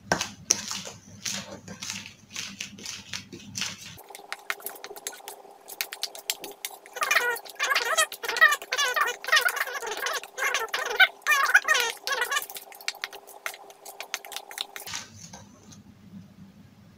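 A metal spoon clicking and scraping against a stainless steel bowl as dry flour mix is stirred. For several seconds in the middle, quick warbling chirps sound in the background.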